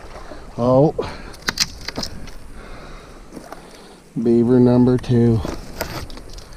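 Boots wading through shallow pond water, with steady sloshing and a few sharp clicks or splashes about a second in. A man's voice makes short wordless sounds near the start and twice near the end.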